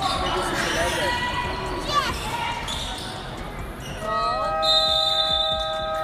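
Basketball in play on a hardwood court: the ball dribbling and short sneaker squeaks, under spectators' voices. About four seconds in, a long steady horn tone starts with a short upward slide and holds.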